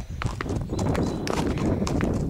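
A horse's hooves walking on a trail, a few clip-clops at an uneven pace, over a steady low rumble.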